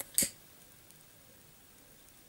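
A hand-held lighter struck once, a short sharp click just after the start, then only faint room tone.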